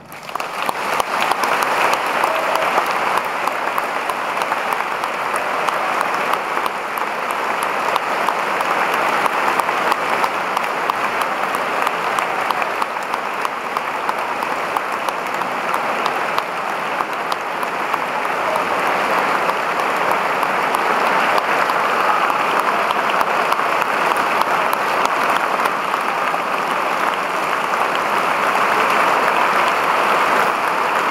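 Concert-hall audience applauding steadily, a dense clatter of many hands clapping at once, growing slightly louder near the end.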